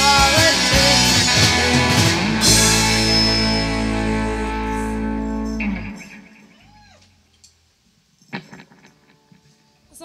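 Live pop-punk band with electric guitars, bass and drums finishing a song: the full band plays for about two and a half seconds, then a final chord is held and rings out until it stops about six seconds in. After that it is much quieter, with only a few brief faint sounds.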